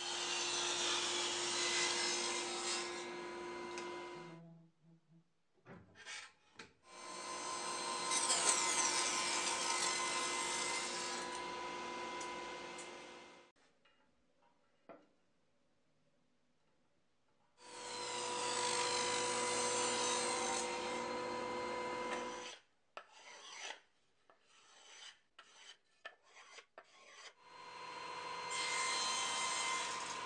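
Table saw running and cutting mahogany strips, in four stretches of several seconds each, with a steady motor tone under the cutting noise. Between the cuts come quieter pauses with scattered knocks and clicks as the wood is handled.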